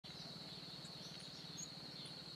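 Faint outdoor ambience at dawn: a steady, high-pitched whine with a few short, faint bird chirps high up, starting about a second in.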